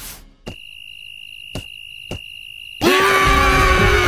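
Cartoon soundtrack: a thin, steady high-pitched electronic tone held for about two seconds, with two soft clicks in it. About three seconds in, a loud sound with a held pitch breaks in abruptly.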